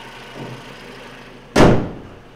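The hood of a 2013 Toyota RAV4 being slammed shut about one and a half seconds in, a single loud bang, over the steady idle of its 2.5-litre four-cylinder engine.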